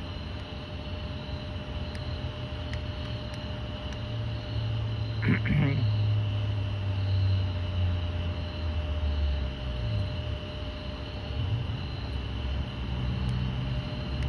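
Night-time outdoor ambience: steady insect chirring, with a low rumble that swells from about four seconds in and fades again by about ten seconds.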